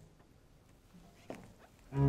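A general pause in the orchestra: the last chord has just died away, leaving faint concert-hall room tone with one brief, faint sliding sound a little past the middle. The orchestra's strings come back in right at the end.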